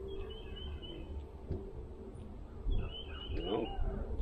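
A songbird calling twice, each time a quick run of short high chirps, over a steady low outdoor rumble.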